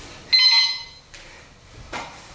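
Electronic gym round timer sounding one steady high-pitched beep of about half a second, signalling the end of a timed round.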